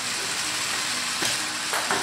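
Lego electric motors spinning the launcher's tyre wheels through a gear train, a steady whirring hiss, with a couple of faint ticks in the second half.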